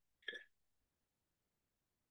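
Near silence: room tone, with one brief, faint vocal sound from a man, a short throat or mouth noise, about a quarter of a second in.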